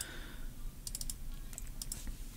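A few short, sharp clicks of a computer mouse, in a quick cluster about a second in and again near the end, over faint room noise.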